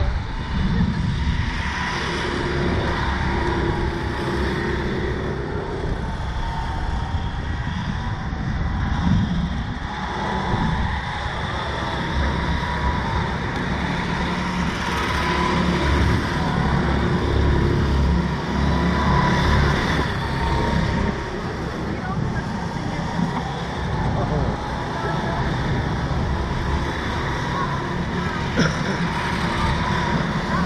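Wind buffeting the microphone of a camera mounted on a slingshot ride's capsule as it swings and bounces: a steady, uneven low rumble.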